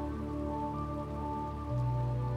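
Steady rain falling, under soft background music of sustained chords whose bass note shifts near the end.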